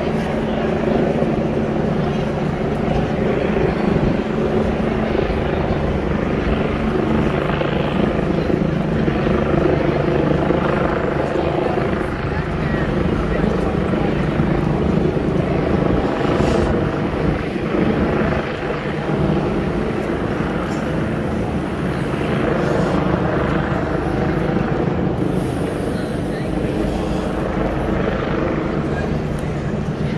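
A steady, low mechanical drone holding one pitch throughout, under the chatter of people on a busy city street.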